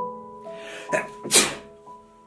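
A person sneezes about one and a half seconds in, after a breathy intake just before, set off by dust. Soft piano music plays underneath.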